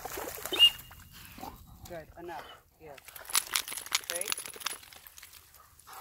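A dog splashing as it wades out of shallow pond water, with a short sharp sound about half a second in; after that, only a few light clicks.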